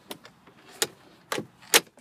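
Plastic glove box lid of a 2014 Dodge Grand Caravan being handled and pushed shut: about four short clicks and knocks, the loudest near the end as the lid latches.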